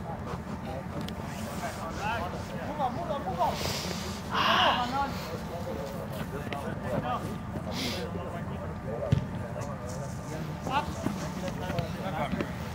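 Players' voices calling out across an outdoor soccer pitch over a steady low rumble, with a louder call about four and a half seconds in and a single sharp knock just after nine seconds.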